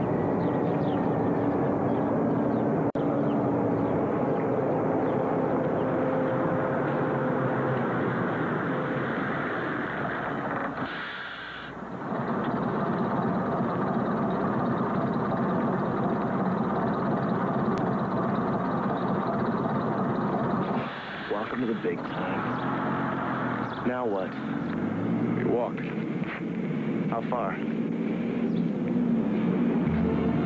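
A coach bus's diesel engine running steadily, with a short drop in level about a third of the way in.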